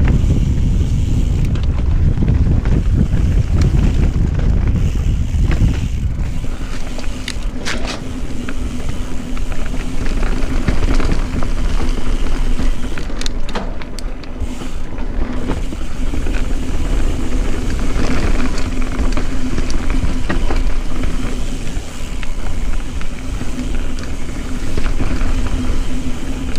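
Mountain bike riding down a dry dirt singletrack: tyres on dirt and loose rock, with clicks and knocks of the bike rattling over bumps. Wind rumbles on the microphone, heaviest in the first six seconds, and a steady low hum joins from about ten seconds in.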